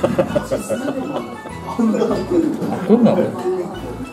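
Talking and laughter over background music.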